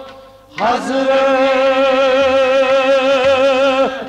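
Kashmiri song: a male voice holds one long sung note with vibrato, entering about half a second in and breaking off just before the end, over a steady harmonium drone.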